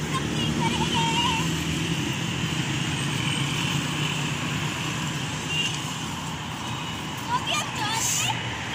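Road traffic: cars and motorcycles driving past in a steady rush of tyre and engine noise, with one engine's hum strongest in the first couple of seconds.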